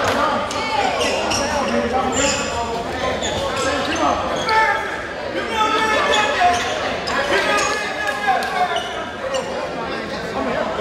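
Voices of players and spectators chattering in a school gymnasium during a stoppage in play, with a basketball bouncing on the hardwood floor.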